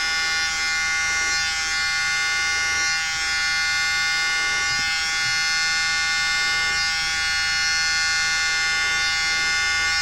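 A mini blower's small electric motor running steadily with an even whine, blowing air across wet acrylic paint.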